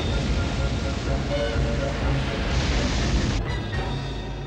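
Cartoon storm sound effects: a steady rush of wind, rain and heaving sea under background music, with a louder surge of spray-like noise about two and a half seconds in. The storm noise begins to die away near the end.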